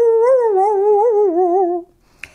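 A woman's voice holding one long, wavering note that slowly falls in pitch and stops just before two seconds.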